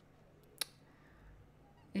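Quiet room tone with one short, sharp click a little over half a second in, then a voice beginning right at the end.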